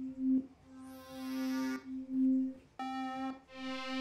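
Synthesizer pad presets from Ableton's Operator, auditioned from the browser: one held note with a hissy, swelling filter sweep on top. A second, brighter pad comes in just before three seconds.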